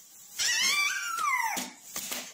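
A baby's high-pitched vocal squeal lasting about a second and falling in pitch toward its end, followed by a few short, softer sounds near the end.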